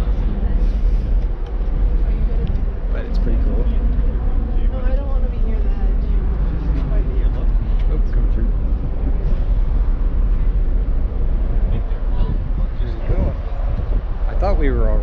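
Wind buffeting the handheld camera's microphone on a ship's open deck: a loud, steady low rumble that flutters, with people's voices faint beneath it.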